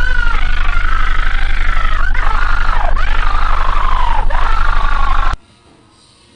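Loud, distorted horror-edit soundtrack noise: a droning high tone that wavers and dips sharply a few times, over a heavy low hum. It cuts off abruptly about five seconds in, leaving only faint hiss.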